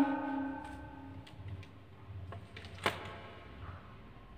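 Felt-tip marker handled on a paper chart: a few faint taps and one sharp click about three seconds in, in a quiet room.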